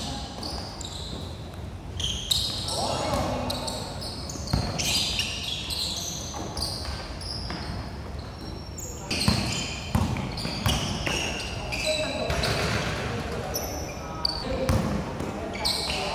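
Basketball game sounds: a basketball bouncing on a hard court in sharp, irregular thumps, with short high shoe squeaks and players calling out.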